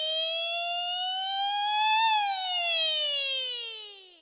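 A Yamaha PSR-EW425 keyboard voice sounding one sustained, bright note. Its pitch slides slowly upward for about two seconds, then slides back down and fades away, like a siren.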